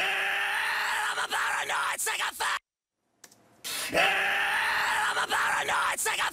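A harshly distorted, screamed metal vocal track played back twice, with a second of silence between the passes. The first pass is without the Crane Song Phoenix tape emulation; the second is with it, which gives the scream more low-mid weight and a smoother, bigger sound.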